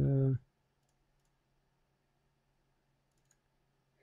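A man's drawn-out "um" trails off, then near silence with a few faint clicks, the clearest a little past three seconds in.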